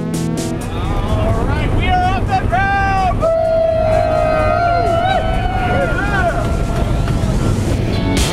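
Steady engine drone inside the cabin of a small jump plane climbing to altitude. From about two seconds in, a person's voice rises over it in long, drawn-out calls.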